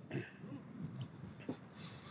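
Faint wind and water noise on open water, with two soft clicks around the middle.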